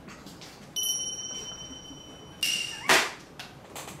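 Toy party horns on a strap-on mouth gag sounding: a thin steady high toot lasting about a second and a half, then a short loud blast about three seconds in.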